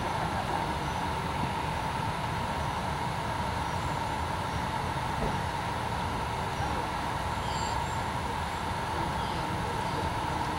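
Steady background rumble and hiss with a constant mid-pitched hum running underneath; no distinct hoofbeats stand out.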